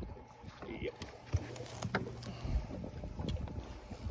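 Faint steady hum of a boat's motor, with low buffets of wind on the microphone and a few small sharp clicks of handling on deck.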